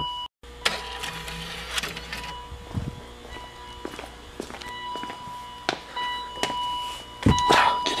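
A BMW E39's door-open warning chime sounds again and again, steady tones coming and going because the driver's door is left open with the key in. Scattered knocks and footsteps come over it as someone climbs into the raised car.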